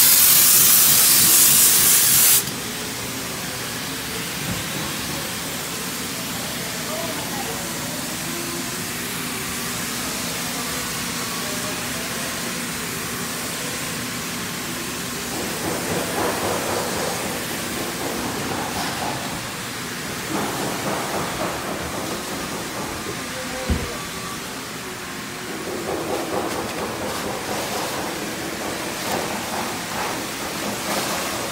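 Spray adhesive hissing out of a spray gun onto foil bubble-wrap insulation, cutting off suddenly about two seconds in. After that there is a quieter steady background with faint voices, and a single sharp knock later on.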